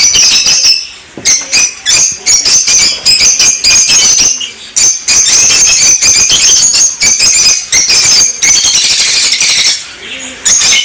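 A flock of rosy-faced lovebirds chattering and screeching: a dense, loud run of shrill, high-pitched calls, with a short lull about a second in.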